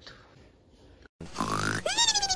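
Near quiet for about a second, then a person's voiced grunt that rises in pitch near the end.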